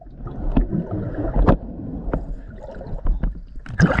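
Muffled underwater noise picked up by a diver's camera: a low rumble with irregular knocks and clicks. Near the end the camera breaks the surface beside the hull with a louder burst of knocks and splashing.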